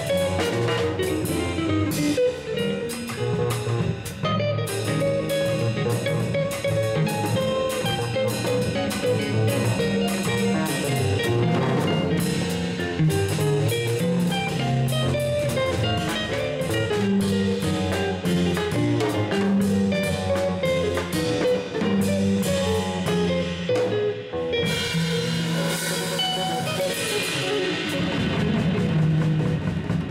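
Jazz trio playing live: electric guitar, plucked double bass and drum kit. Cymbals swell into a wash in the last few seconds.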